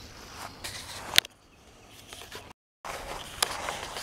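Faint footsteps on a grass trail with a few sharp handling clicks. The sound drops out completely for a moment just past the middle, then the faint outdoor background returns.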